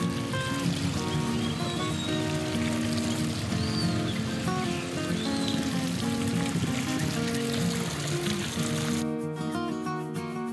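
A small garden fountain's jet splashing into a wide stone basin, a steady trickling splash that cuts off suddenly near the end, under background acoustic guitar music.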